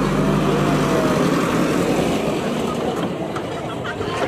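JCB backhoe loader's diesel engine running hard under load, blowing black exhaust smoke. It is loudest in about the first second, then runs steadily.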